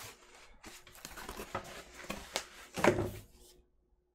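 Packaging rustling and scraping as a vinyl LP is pulled out of its mailer, with scattered clicks and one louder knock almost three seconds in; the handling stops suddenly near the end.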